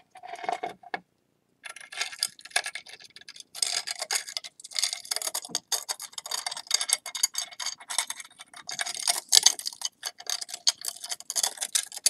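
Small ceramic shard clicking and grating against the broken rim of a glazed bowl as it is dry-fitted into place by gloved hands: a dense, uneven run of small clicks and scrapes after a short pause about a second in.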